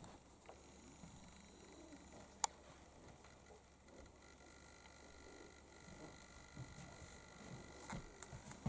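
Near silence: faint room tone in a small room, broken by one sharp click about two and a half seconds in.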